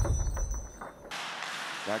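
Broadcast graphics transition sound effect: a deep rumbling sweep with a few sharp cracks that stops about a second in, giving way to the steady background noise of the ice rink.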